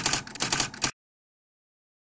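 A quick run of sharp, irregular clicks, like typewriter keystrokes, that stops just under a second in. After that the audio is completely silent.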